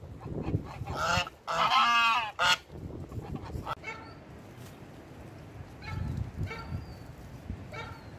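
Domestic geese honking: a loud burst of three calls about a second in, the middle one long, followed by a few fainter, shorter calls.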